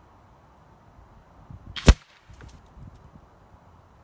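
A single sharp crack about two seconds in from a shot of a .30 calibre Rapid Air Weapons air rifle, heard from the target end of a 75-yard range, followed by a few faint ticks. Gusty wind rumbles on the microphone throughout.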